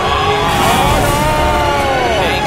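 Race-car sound effects: several long, overlapping squealing tones that rise and fall, like tyres screeching, over a low engine rumble.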